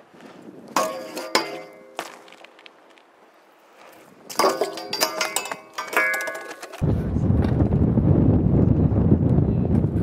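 BMX bike striking and grinding along a steel handrail: two bursts of sharp clangs with a metallic ring, about a second in and again from about four to six seconds. From about seven seconds a loud, steady low rush of wind noise on the microphone takes over.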